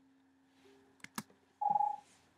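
The last ukulele chord rings out and fades away. Two sharp clicks follow about a second in, then a short electronic beep near the end.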